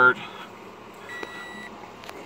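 2014 Toyota Corolla's instrument-cluster warning chime: one steady high beep of a little over half a second, starting about a second in, with the ignition just switched on.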